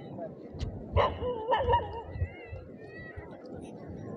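A dog barking about a second in, then giving a few short, high, wavering whines.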